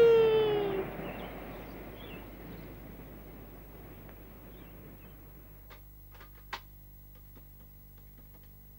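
A voice holding out the end of a call, falling slightly in pitch and ending about a second in; then a faint hiss that fades away, with a few soft clicks about six seconds in.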